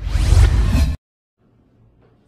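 A loud whoosh-like sound effect lasting about a second, full from deep to very high, that cuts off abruptly, followed by faint room tone.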